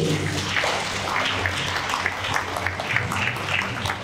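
A group of people applauding, a steady dense patter of hand claps.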